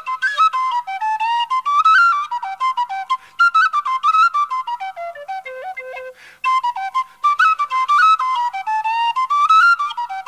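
Solo tin whistle playing an Irish jig unaccompanied, a quick melody of short notes that climbs and falls in repeating phrases.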